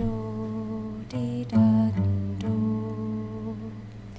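Woman's voice humming a slow wordless melody in long held notes over acoustic guitar, the notes changing about a second in and again around the middle, fading a little toward the end.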